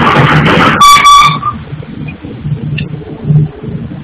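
Noise from a granite tile workshop: a loud burst of noise, then a short, piercing high-pitched tone about a second in, over an uneven low rumble that comes and goes.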